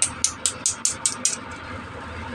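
Small hard plastic toy piece handled close to the microphone: a quick run of about seven sharp plastic clicks in the first second and a half, over a steady low hum.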